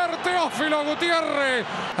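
A man's voice shouting a goal celebration in high, drawn-out calls, several held notes each falling off at the end.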